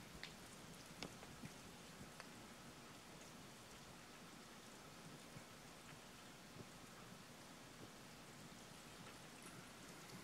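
Near silence: a faint steady hiss of room tone, with a few soft ticks in the first couple of seconds.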